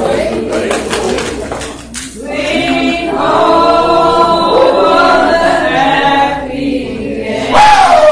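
Church congregation singing together, many voices overlapping, with a louder voice close by near the end.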